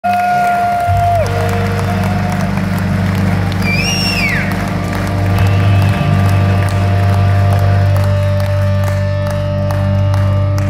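Held electric guitar and bass notes droning from the band's stage amplifiers: a steady low drone, with a higher note that drops in pitch about a second in. Crowd cheering runs under it, and someone in the audience gives a rising-then-falling whistle about four seconds in.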